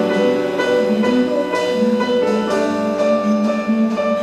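Live jazz ensemble of saxophones, trumpet, guitar and piano playing sustained chords that change about every half second to a second.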